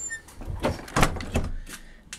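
Old wooden door being moved and pushed shut, giving a few short knocks and rattles from the wood and its fittings.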